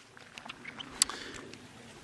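Faint water sounds from a shallow, stone-bottomed creek, with a single sharp click about a second in.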